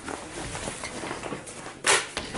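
Soft rustling and handling of a fabric laundry bag as it is moved, with one brief, louder rustle near the end.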